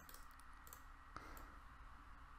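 Near silence with a few faint clicks at a computer, the most distinct just over a second in.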